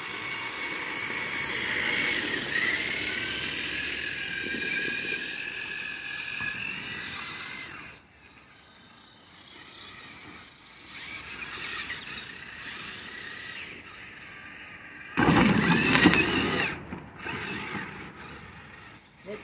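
Electric motor and gear whine of RC rock crawlers driving, rising and falling in pitch with the throttle for the first several seconds, then dropping away. Near the end there is a loud, brief noisy burst about two seconds long.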